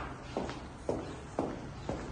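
Footsteps on a polished tile floor at a steady walking pace, about two steps a second, four steps in all.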